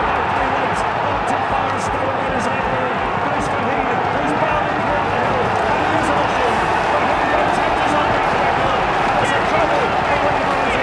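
Large racecourse crowd cheering and shouting at a race finish: a steady roar of many voices.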